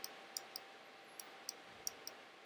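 Faint computer mouse clicks, about six scattered over two seconds, over quiet room tone.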